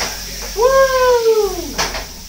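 Scallops sizzling in a skillet on a gas burner. In the middle, a single drawn-out high call of about a second, rising slightly then falling, stands out over the sizzle.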